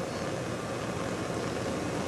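Steady hiss with a low hum and a faint steady tone, holding level throughout: background noise of the recording, with no distinct sound from the wax carving.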